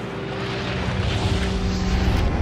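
A rushing, whooshing sound effect that swells steadily louder, with a low rumble beneath it, over sustained music notes, building toward a peak near the end.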